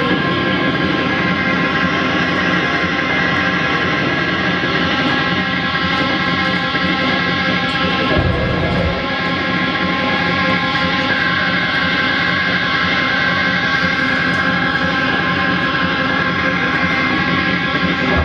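Live rock band playing loud electric guitar, bass guitar and drums in a dense, unbroken wall of sound, with sustained guitar tones and no singing.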